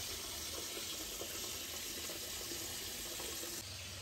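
Steady running water, trickling and splashing, typical of the water flow in an aquarium fish room.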